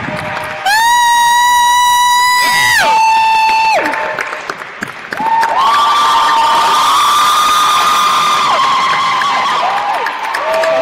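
Concert audience whooping and cheering over light applause: long, high, held "woo" calls, one from about a second in to about three seconds, a shorter one just after, and another from about five seconds to eight and a half.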